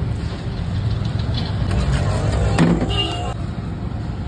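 Steady low background rumble, with a brief sharp sound about two and a half seconds in.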